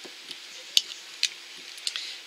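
A few light clicks and taps from handling a glass nail polish bottle and its brush cap, the sharpest a little under a second in, over a steady fan hiss.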